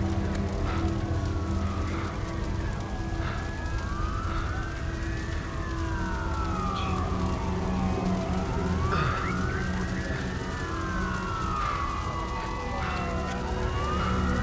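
Emergency vehicle sirens in a wail pattern: at least two of them overlapping, each sliding slowly up and down in pitch every few seconds, over a steady low hum.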